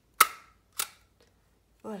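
A stapler driving a staple through card to hold an elastic: two sharp clacks about half a second apart, the first louder.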